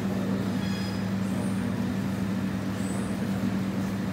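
Steady low machine hum at one constant pitch, with a few faint high chirps about every second and a half.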